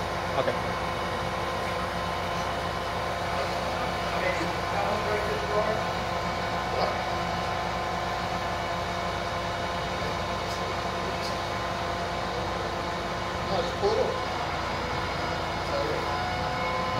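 Truck-mounted crane's engine running steadily to power the crane while it lowers a load, a constant drone with several steady tones.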